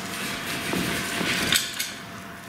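Rustling and handling noise from a person moving about, with a couple of light clicks or knocks about a second and a half in.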